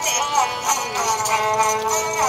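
Rajasthani folk song: a voice sliding into and holding one long note, accompanied by a bowed ravanahatha fiddle.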